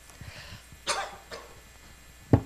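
A man coughing into a handheld microphone: one sharp cough about a second in, then a smaller second one. The speaker has just about lost his voice.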